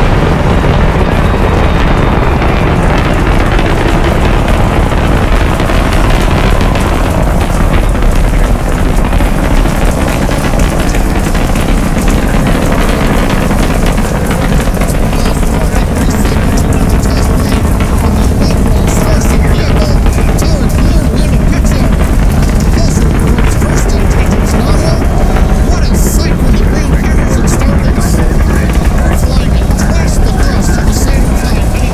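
Rocket launch roar: a loud, steady deep rumble, with a crackle that grows from about halfway through.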